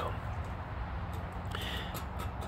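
Outdoor background of distant road traffic: a low, steady rumble with no distinct events.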